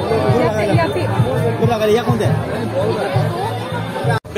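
Several voices chattering over one another, over background music.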